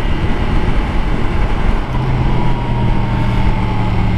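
Wind rush and road noise on a Yamaha MT-10 motorcycle at highway cruising speed, with its 998 cc inline-four engine running underneath. From about two seconds in, a steady low engine hum stands out more clearly, with a faint whine that falls slightly.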